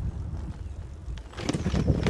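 Bicycle rolling along a gravel track, with wind buffeting the microphone and the tyres rumbling. About one and a half seconds in, the crunching and rattling of the tyres on the gravel gets louder.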